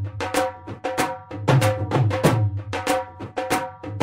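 Instrumental Punjabi bhangra music built on a dhol beat: a steady repeating rhythm of deep bass strokes and sharp high slaps, over a held tone.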